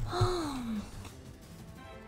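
A woman's short wordless sigh, breathy and falling in pitch over nearly a second, with a brief low bump as it starts, over steady background music.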